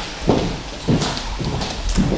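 Footsteps of a person walking across a stage floor, a short knock about every half second.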